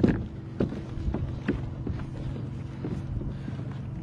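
Scattered knocks and thumps as a freshly landed black drum is handled in a landing net against a small boat's hull, over a steady low hum.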